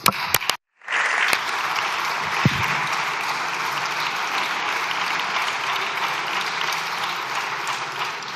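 A group of people applauding, steady dense clapping that starts about a second in, after a few sharp knocks and a brief dropout.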